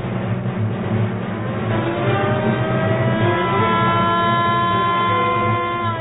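Electric motor siren sounding an alarm for a prison riot: a wail that rises in pitch over the first few seconds, then holds steady.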